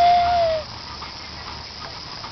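A high-pitched voice held on one drawn-out note, trailing off about half a second in, then only faint outdoor background noise.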